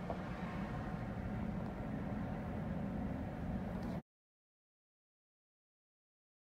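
Steady low rumble of a car running, heard inside the cabin, cutting off abruptly about four seconds in to dead silence.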